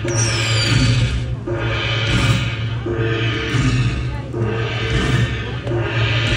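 Dragon Cash slot machine playing its free-spin bonus music and sound effects, a repeating electronic jingle that cycles about every second and a half, with a falling chime just after the start, over a steady casino-floor hum.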